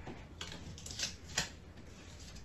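Light handling sounds of cutout butterflies being pulled off a wall and pressed onto it: a faint rustle with three short clicks.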